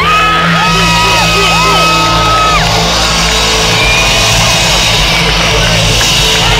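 Loud live concert music through a festival PA with a steady bass, heard from among the crowd, with the crowd cheering and whooping over it. A long high held note or shout rises in at the start and lasts about two and a half seconds, with shorter whoops under it.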